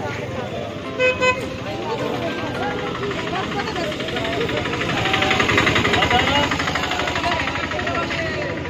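A vehicle horn gives two short toots about a second in, over the chatter of a crowd and street traffic. An engine running close by gets louder in the second half.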